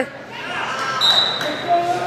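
Gym crowd murmur with a short, thin, high whistle tone about a second in, the referee's whistle restarting the wrestling from the down position; shouting voices rise again near the end.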